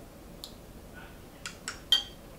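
Metal spoon clicking against a bowl three or four times in the second half, the last clink the loudest and ringing briefly.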